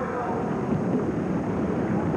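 Steady low rumble of arena noise from an old TV broadcast: a murmuring crowd mixed with roller skates rolling on the banked track.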